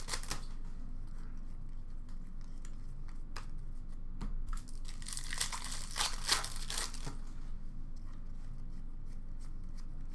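A hockey card pack's foil wrapper being torn open and crinkled by hand, in a few short rustling bursts with the longest stretch of tearing and crinkling a little past the middle.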